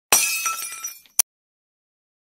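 A sudden crash with high, tinkling ringing that dies away over about a second, then one sharp click.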